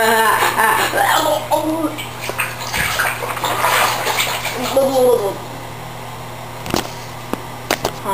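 Water splashing in a bathtub mixed with voices that form no clear words. A few sharp clicks follow near the end.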